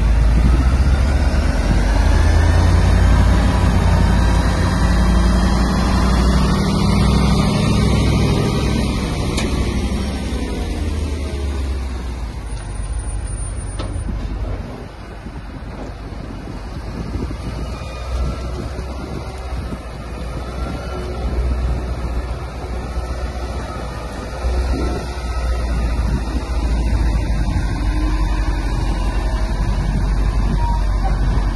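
Six-axle Liebherr LTM 1150-6.1 mobile crane driving: its diesel engine gives a deep, low rumble whose pitch rises and falls as it manoeuvres. It is loudest in the first third, drops off about halfway through, and builds again toward the end.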